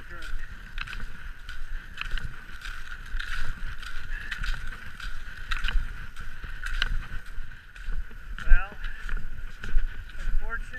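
Skate skis and poles working on groomed snow: a rhythmic stroke about every second and a quarter over a steady gliding hiss, with a short squeak near the end.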